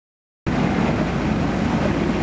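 A sailboat's rebuilt inboard diesel engine running under way with a steady low rumble. It cuts in suddenly about half a second in.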